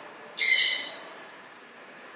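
A single short, harsh bird call about half a second in, loud and sudden, then fading away within about half a second.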